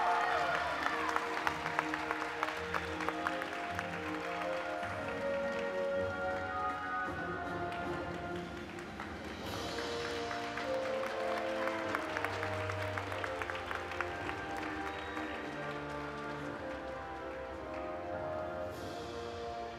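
Instrumental music playing with an audience applauding. The clapping is loudest at first and thins out over the first several seconds while the music carries on.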